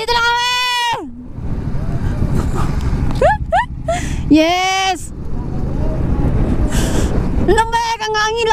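Several drawn-out, high-pitched vocal hoots from the rider, each rising at the start and sliding down as it ends, over the steady low running of a motorcycle engine and wind rush.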